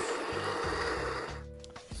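Breville Smart Grinder Pro conical burr coffee grinder running as it grinds espresso into a portafilter, then stopping about one and a half seconds in as the dose finishes, over background music.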